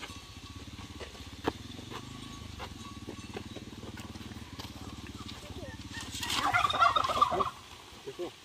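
A farm fowl calls once near the end, a rapid rattling call about a second long and the loudest sound here. Under it runs a steady low drone that stops just after the call.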